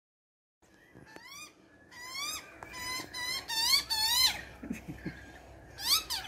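Young Australian magpie begging for food: a run of about six repeated calls over some three seconds, each sweeping up then down in pitch, with another call near the end.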